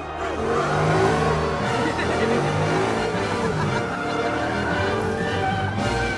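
Animated race car sound effects: an engine revving and tyres squealing as the car spins in a smoky burnout, with music underneath.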